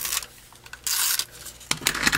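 Cardstock being handled and rubbed against a craft mat: short papery rustles, one at the very start and a longer one about a second in.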